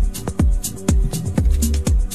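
Electronic dance music from a DJ mix: a steady four-on-the-floor kick drum about two beats a second, hi-hats between the kicks, and a held synth chord.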